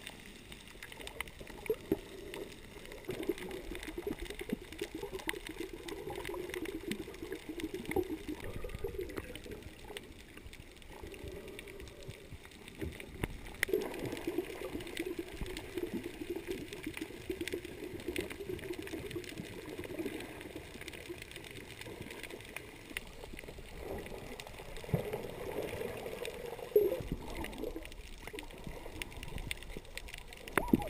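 Underwater sound from a camera held just below the sea surface: a wavering rush of moving water with many scattered sharp clicks, easing off briefly a few times.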